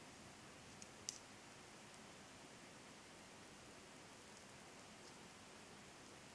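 Near silence with a faint steady hiss, broken by two light clicks of knitting needles touching about a second in, the second one sharper.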